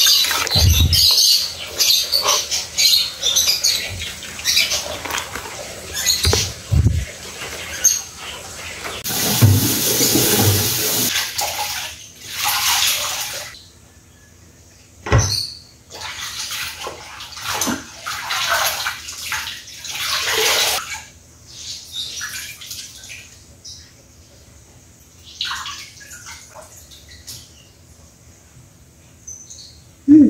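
A ladle clinking in a steel wok as boiled papaya leaves are lifted out, then water running and splashing in a kitchen sink as the leaves are handled, loudest in two stretches about nine and twelve seconds in. A single sharp knock comes about fifteen seconds in, followed by quieter handling sounds.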